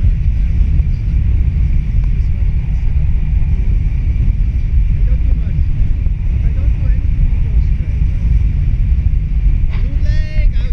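Wind rushing over a handheld camera's microphone in flight under a tandem paraglider: a loud, steady low rumble.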